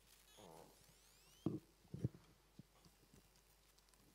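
Two sharp knocks about half a second apart, then a few faint clicks, over quiet room tone. This is handling noise from the speaker working his laptop at the lectern.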